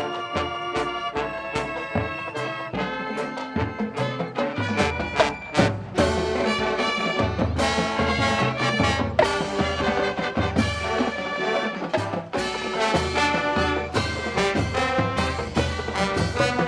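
High school marching band playing: brass chords over sharp drum hits, with low bass notes coming in about four and a half seconds in.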